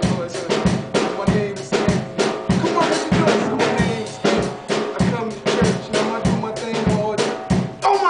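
Acoustic drum kit played live: bass drum, snare and rimshots in a fast, steady beat of about four to five hits a second.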